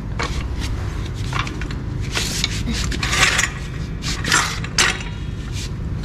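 Steel hydraulic floor jack clinking and scraping as it is worked out from under the car: a run of sharp metallic clinks, with rougher scraping bursts from about two seconds in.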